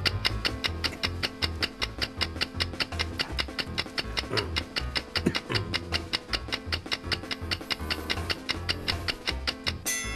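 A TV countdown-timer music cue: fast clock-like ticking, about five ticks a second, over a pulsing bass beat, ending in a bright chime as the ten seconds run out.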